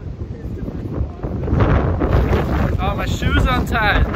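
Strong wind buffeting an iPhone's microphone in a rainstorm, a heavy low rumble that grows louder about one and a half seconds in. Near the end a voice calls out over the wind.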